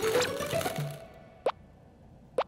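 A light musical phrase with a rising run of notes fades out within the first second, then a single short cartoon plop sound effect about a second and a half in.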